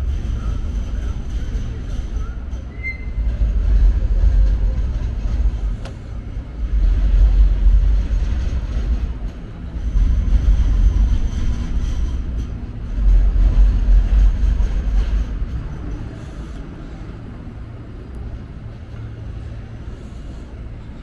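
City street traffic, with light rail trams and vehicles making a low rumble that swells and fades several times, then eases off near the end.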